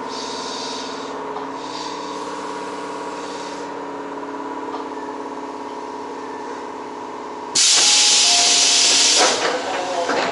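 Tobu 8000-series electric train standing at a platform, its onboard equipment giving a steady hum of several tones. Near the end comes a sudden, loud hiss of compressed air released from the train's air system, lasting under two seconds before it tails off.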